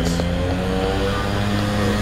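A motor running steadily with a low, even hum that holds one pitch, like an engine idling.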